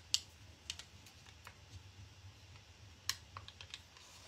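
Scattered light clicks and crackles, irregular, from the clear plastic backing sheet of an IOD transfer being handled and peeled back from the surface, over a faint steady hum.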